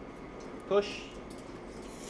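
A man says "push" once over a steady low background, with a few faint clicks; no clear sound of water flowing stands out.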